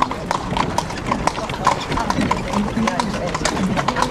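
Horse's hooves clip-clopping on stone paving as it pulls a carriage, a quick, uneven run of sharp strikes. Voices can be heard faintly in the background in the second half.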